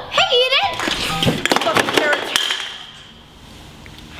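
A short wordless vocal exclamation, then about a second and a half of rapid clattering knocks and clicks, ending in a brief high ringing tone.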